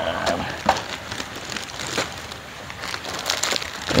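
Clear plastic bags crinkling and caramel popcorn rustling as it is scooped by hand and poured into the bags, with irregular crackles and small clicks.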